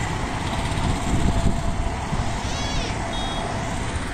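Steady din of city road traffic with a low rumble, with a brief high chirping sound about two and a half seconds in and a short high beep just after.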